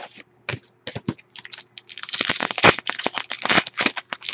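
Foil trading-card pack wrapper handled and torn open by hand: a few separate sharp crackles in the first two seconds, then dense crinkling and tearing through the second half.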